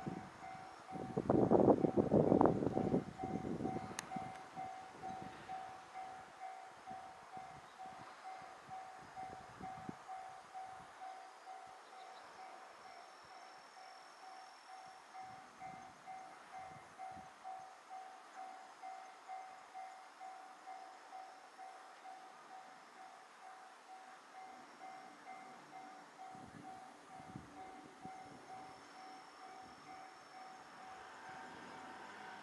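Distant railway level-crossing warning bell ringing a steady, evenly repeating fixed-pitch ding. The crossing is closed for an approaching train. A low rumble fades away over the first few seconds.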